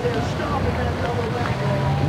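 Tow boat engine running steadily, a low rumble that settles into a steady hum about one and a half seconds in.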